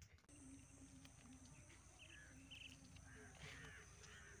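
Very quiet outdoor background with faint, distant birds calling: short chirps now and then, a little more frequent in the second half.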